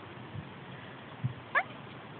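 A cat gives a single very short squeak that rises quickly in pitch, about one and a half seconds in. A soft low thump comes just before it.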